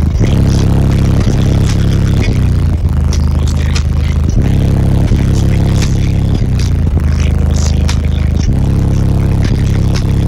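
Bass-heavy music played very loud through a semi truck cab's custom subwoofer system, deep sustained bass notes changing every second or so under a beat.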